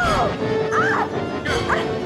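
Short, high rising-and-falling cries and yelps from a violent struggle, several in quick succession, over tense film score music.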